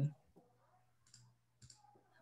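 Two faint clicks from a computer as the chat box is being used, about a second in and again half a second later, after a spoken word ends at the very start.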